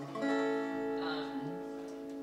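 Acoustic guitar struck once about a quarter second in and left ringing, slowly fading.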